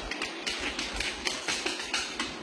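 Irregular clicks and taps of a husky's claws and a person's steps on a hardwood floor, with low thuds of the phone being handled.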